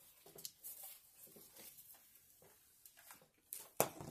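Faint handling of a medical alert pendant on its lanyard as its button is tried, with small rustles and a sharp click near the end.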